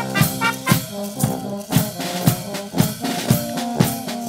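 Brass band playing an upbeat tune: trumpets, horns and tuba over a bass drum and snare drum keeping a beat about twice a second.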